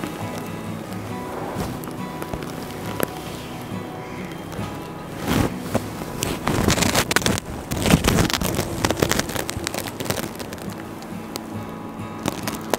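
Background music with steady held notes. From about five seconds in, a few seconds of loud, irregular rustling of tussar silk sari fabric as it is handled and spread out.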